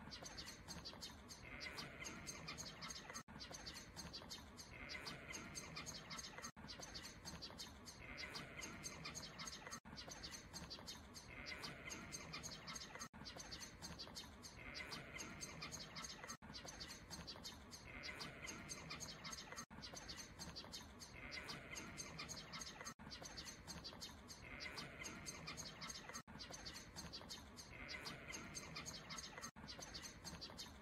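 Faint outdoor background with birds chirping, a short recording looped about every three seconds with a brief dropout at each repeat.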